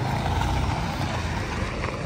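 A small pickup truck driving past close by on a dirt lot, its engine running steadily.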